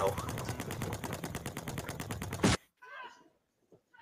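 Rapid automatic-gunfire sound effects from a mobile shooter game, a fast even stream of shots that cuts off suddenly about two and a half seconds in.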